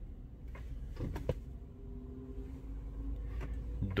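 Quiet car cabin with the ignition on and the engine off: a low rumble, two faint clicks about a second in, and a faint steady hum partway through.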